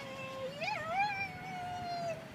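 A Shih Tzu whining: one long, high whine that wavers in pitch near the middle.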